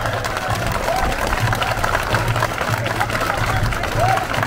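A large crowd of festival men clapping and calling out together, a dense patter of hand claps with a low beat recurring about every half second.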